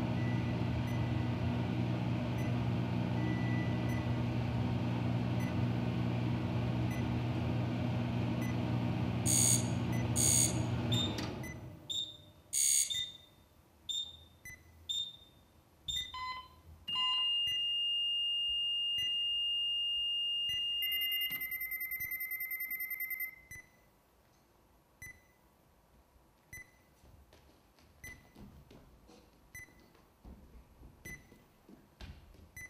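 Electronic sound score: a dense drone of steady low tones, with a few sharp clicks, cuts off about eleven seconds in. Sparse electronic beeps and blips follow, then a long high beep held for about four seconds and a short buzzing tone, with faint scattered blips near the end.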